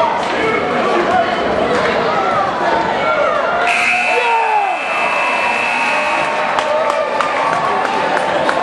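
Crowd voices in a gymnasium, then the scoreboard buzzer sounding one steady high tone for about two and a half seconds near the middle, marking the end of the basketball game.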